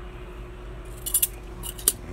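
A bunch of keys jingling in short metallic clinks as it is handled and set down: a cluster about a second in and two sharper clinks near the end.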